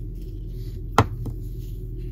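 A sharp knock about a second in, followed by a fainter one just after, over a steady low hum.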